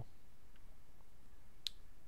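Quiet room tone with a faint low hum, broken by one short, sharp click about one and a half seconds in.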